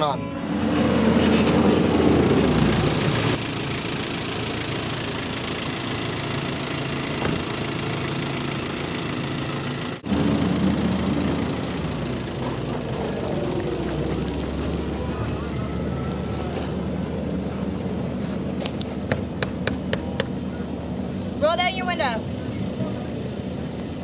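Vehicle engine idling steadily, with music playing in the background.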